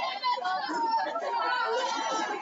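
Several people's voices chatting at once in a bowling hall.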